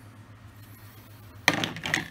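Low room hum, then about a second and a half in a sharp metallic clank followed by a few clinks with brief ringing: the steel wire bender clamped in a bench vise being handled as piano wire is set in it for bending.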